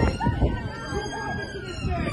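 Emergency vehicle siren wailing, its pitch sliding slowly downward, with a crowd's raised voices over street noise.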